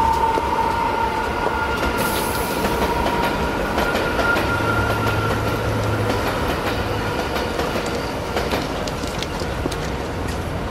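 Steady mechanical rumble with long, high, squealing tones running through it, and a brief hiss about two seconds in.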